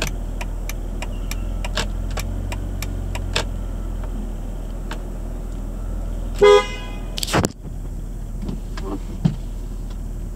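2006 BMW Z4 3.0i's 3.0-litre inline-six idling steadily on a cold start, heard from inside the cabin, with scattered light clicks. About six and a half seconds in a car horn gives one short two-tone toot, followed by a brief loud thump.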